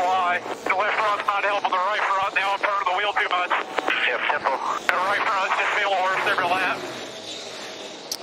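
A man talking over a team radio, with stock car engines running underneath; the talk stops about seven seconds in.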